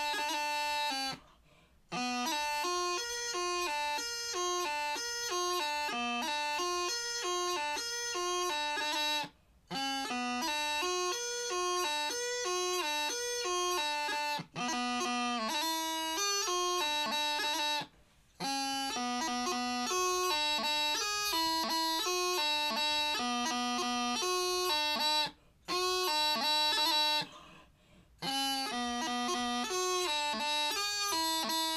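Bagpipe practice chanter playing a jig, a quick run of reedy notes with no drones, broken by about six brief gaps.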